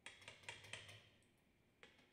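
Faint, sharp clicks and taps: a quick cluster of several in the first second, then a single click near the end.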